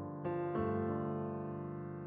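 Soft background piano music: sustained chords, with new chords struck about a quarter and half a second in, then ringing on and slowly fading.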